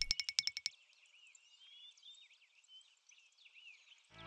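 A quick run of about eight bright, evenly spaced pitched ticks that fades out within the first second, then faint birdsong chirping.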